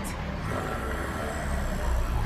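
Cartoon sound effect of a steady low rumbling noise as ice debris blasts past, with a faint thin high tone coming in about half a second in.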